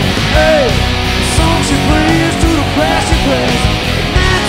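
Live country-rock band music with no singing: a lead electric guitar plays notes that bend up and down in pitch over a steady drum-and-bass beat.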